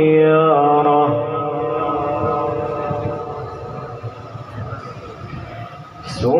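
A male Qur'an reciter's voice in maqam Saba, holding one long melodic note. The pitch steps down during the first second, then the note fades gradually over the rest of the phrase.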